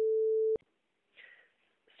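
A steady electronic beep, one pure tone held at a single pitch, that cuts off with a click about half a second in, followed by near silence.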